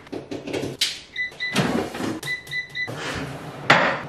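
Digital air fryer's control panel beeping as its buttons are pressed: two short beeps, then about four more in quick succession, amid kitchen clatter. A louder knock near the end as a bowl is set down on the benchtop.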